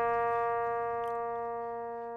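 One open note on a guitar's second string, tuned down a half step to B flat for E-flat tuning, ringing as a tuning reference and slowly fading.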